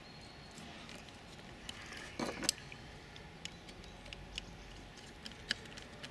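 Light, scattered clicks and ticks of a cable lead and screwdriver being handled at a screw terminal block while a solar panel's positive wire is fastened, with a short, louder cluster a little over two seconds in.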